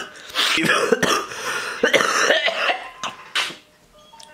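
A man who is ill coughing and clearing his throat several times, mixed with a laugh, dying away near the end.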